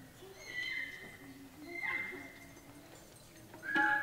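Keertan singing: a high voice holds three long notes, each sliding down at its end, over a low steady harmonium drone. Near the end a louder harmonium chord and a tabla stroke come in.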